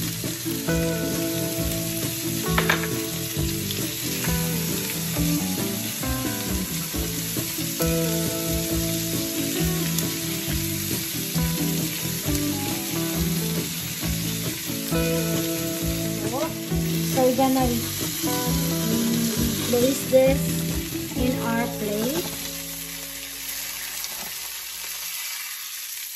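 Salmon fillets and chopped onion frying in oil in a cast-iron skillet, a steady sizzle, with the tongs stirring the onion. Background music with a steady beat plays over it and stops about four seconds before the end, leaving the sizzle alone.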